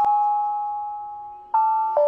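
A bell-like chime note ringing and slowly fading, then a second, slightly higher chime note struck about one and a half seconds in, like a doorbell ding-dong.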